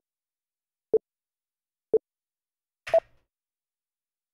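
Countdown timer beeping down to zero: three short, low electronic beeps a second apart, then a higher-pitched final beep about three seconds in marking zero.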